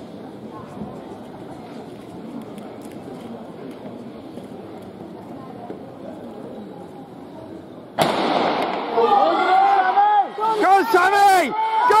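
Low murmur of a large sports hall, then about eight seconds in a starting pistol fires with a sharp crack that echoes round the hall. Spectators start shouting encouragement a second later.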